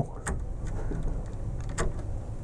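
Faint handling noise from a screwdriver and screw being worked against the print head's servo mount while locating the screw hole, with a small click about a quarter second in and a sharper click near the end.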